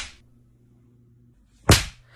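A single loud, sharp slap about three-quarters of a second before the end, following a stretch of near silence with only a faint low hum.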